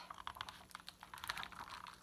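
Pages of a hardcover picture book being turned and handled: a run of faint, quick paper clicks and crackles.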